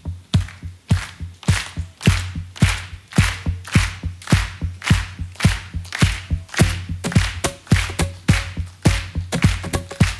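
Acoustic guitar body struck by hand in a steady beat of low thumps and brighter slaps, repeated by a loop pedal. A few picked guitar notes join about two-thirds of the way in.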